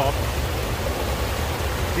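Shallow mountain creek rushing over rocks and small rapids, a steady hiss of moving water with a low rumble underneath.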